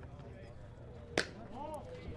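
A single sharp pop a little past a second in as a pitched baseball smacks into the catcher's leather mitt, a pitch called a ball. A faint distant voice follows.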